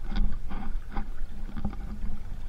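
Water splashing and lapping against a plastic sit-on-top kayak as it is paddled, in a series of short splashes.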